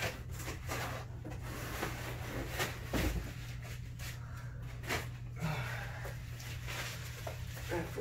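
Light handling noises in a small room: a few scattered clicks and rustles and a dull thump about three seconds in, over a steady low hum.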